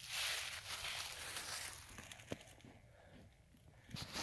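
Footsteps crunching through dry fallen leaves, soft and crackly for about two and a half seconds, then quieter with a single click.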